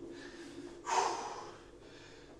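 A man breathing hard while catching his breath after kettlebell exercise, with one deep, loud breath about a second in.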